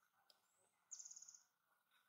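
A small bird's high, rapid trilled call, about half a second long, starting just under a second in, over a faint steady high whine in the background.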